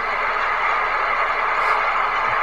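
A steady rushing noise, even and unbroken, with no pitch.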